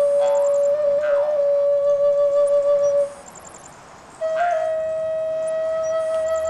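Film score music: a flute holds one long note, breaks off about three seconds in, and after a short pause holds a slightly higher long note. Faint high chirps recur every few seconds.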